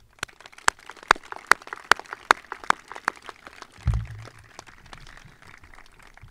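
A crowd applauding: one set of hands clapping loudly at about two or three claps a second over fainter scattered clapping, thinning out near the end. A low thump about four seconds in.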